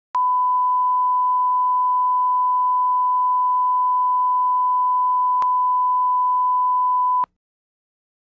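Steady, pure line-up test tone, the reference tone that goes with colour bars, held at one pitch with a faint click about five seconds in; it cuts off suddenly a little after seven seconds.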